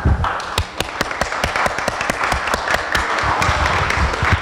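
Audience applauding: many people clapping, with individual hand claps standing out among the overlapping claps.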